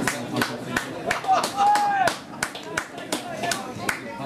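Scattered hand-clapping from a small crowd of spectators, with voices talking and a short drawn-out call about halfway through.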